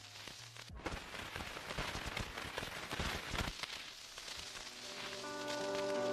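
Transition between two tracks of a lo-fi beats mix. The previous track stops just under a second in. A soft crackling, pattering noise full of small clicks fills the gap, and the next track's sustained chords fade in and grow louder from about five seconds.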